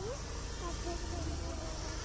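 Street ambience: a steady low rumble of traffic with a high hiss and faint distant voices.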